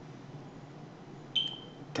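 A short, single high-pitched beep about one and a half seconds in, starting sharply and fading within a fraction of a second, over quiet room tone.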